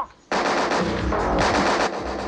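Rapid automatic gunfire, a dense run of shots that starts abruptly about a third of a second in after a moment of silence, with music underneath.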